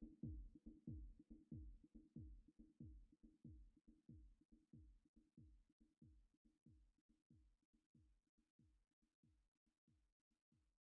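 The end of an electronic track fading out: low, deep drum-machine kick thumps, each dropping in pitch, about two a second over a held low note, growing steadily fainter until they are barely audible.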